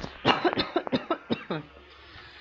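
A woman coughing, a quick series of short coughs in the first second and a half that die away.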